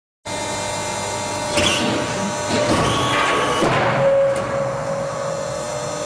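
QT10-15 concrete block-making machine running in a factory hall: a steady machine hum carrying several fixed tones. Louder, noisier working sounds come in from about one and a half to four and a half seconds in.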